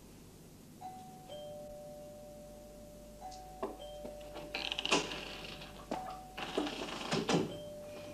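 A two-note doorbell chime, a higher note falling to a lower held note, rung three times, with knocks and shuffling clatter in between, loudest about five seconds in.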